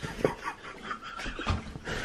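A person's breathy, panting laughter after being startled by a scare, with camera-handling rustle and a low thump about three-quarters of the way through.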